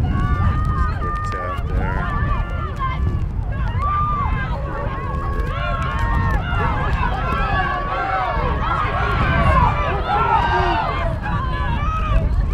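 Several high-pitched voices shouting and calling over one another during rugby play, growing busier and louder past the middle, over a steady low wind rumble on the microphone.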